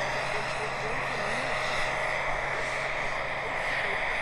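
Gas turbine of a large radio-controlled Bell 412 scale model helicopter, a Jakadofsky Pro 5000, running steadily in flight. It makes an even high whine over the rotor noise.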